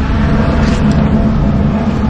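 A van driving past close by on wet pavement: a loud, steady low rumble.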